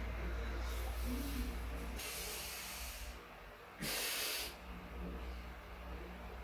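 Heavy, hard breathing of a man winded from single-leg step-ups to failure: about three forceful breaths, the loudest about four seconds in, over a low steady hum.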